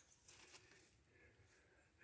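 Near silence, with no distinct sound.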